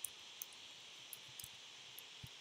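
Faint, irregular key clicks of someone typing on a computer keyboard, about half a dozen strokes, over a steady background hiss.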